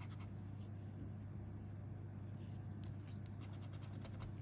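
Scratch-off lottery ticket being scraped: faint, quick, light scratching strokes rubbing off the coating, over a low steady hum.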